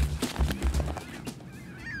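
A paper-tearing transition sound effect over a low music beat, which fades to a quieter stretch. A faint, short falling call comes near the end.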